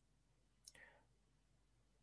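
Near silence: room tone, with one faint brief click a little before the middle.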